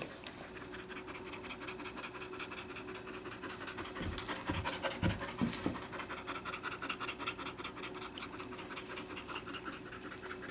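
A young black Labrador retriever panting fast and steadily, with a few dull low thumps about four to six seconds in.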